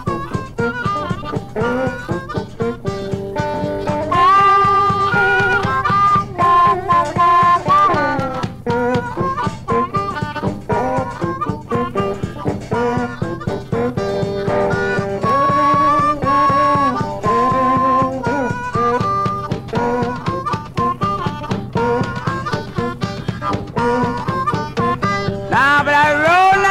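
A 1950 Chicago blues trio recording, heard as a lo-fi transfer: harmonica playing long held, bending notes over guitar and a steady drum beat, with no singing.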